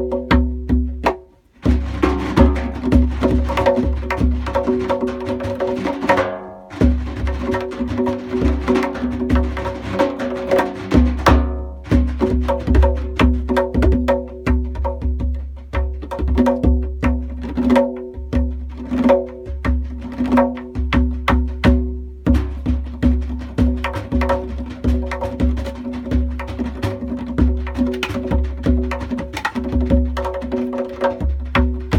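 Tombak (Persian goblet drum) played in an improvised solo: dense, rapid finger strokes and rolls over the ringing tones of the goatskin head. There is a short break about a second and a half in and brief pauses near six and eleven seconds.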